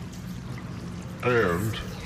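Steady hiss with a low electrical hum from an old recording of a large hall, broken about a second in by a man's voice saying a short word or two.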